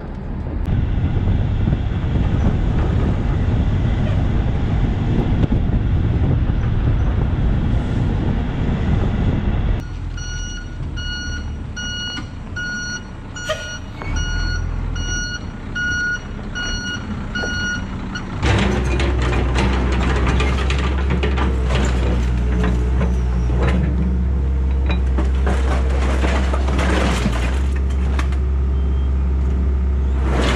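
A load of scrap metal rumbling and scraping out of a tipped dump truck body. Then a reversing alarm beeps about once a second for some eight seconds, and from about 18 seconds on an excavator's diesel engine runs steadily with metal clanks as its bucket works the scrap.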